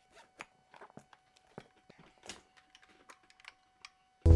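Faint zipper and handling noises: a soft melodica case is unzipped and the melodica lifted out, a scatter of short clicks and scrapes.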